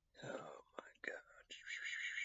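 A man whispering close to the microphone. About one and a half seconds in, a high, rapidly pulsing sound starts.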